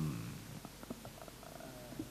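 Low, steady room tone in a pause between spoken words, with a few faint clicks and a brief faint hum near the end.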